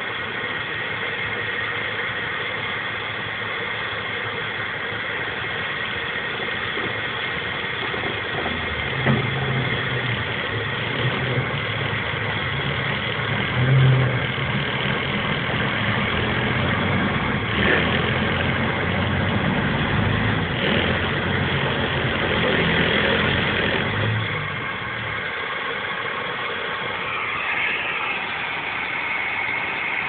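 A vehicle engine running steadily, heard from inside the cab. It works harder and louder for about fifteen seconds in the middle, then settles back.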